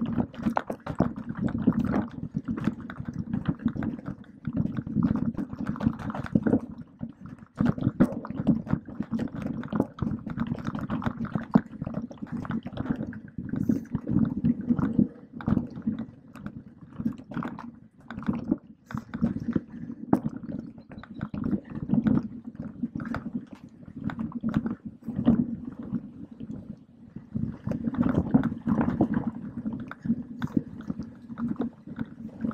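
Mountain bike rolling fast down a wet, muddy forest trail, mostly coasting: the knobby tyres squelch and rumble on the soft dirt while the bike rattles and knocks over roots and bumps in quick, uneven clatters.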